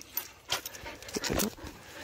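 Siberian husky panting with her mouth open, with a few light clicks.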